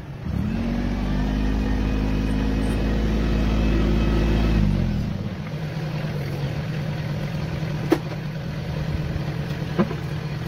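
Compact tractor engine revving up and held at high speed for about four seconds, then settling to a lower steady speed as the tractor backs its rear grader blade through loose soil. Two sharp clicks come near the end.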